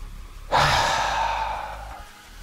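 A man's long, audible out-breath, a sigh through the mouth with a brief voiced start, beginning about half a second in and slowly fading: the exhale of a deliberate deep breath.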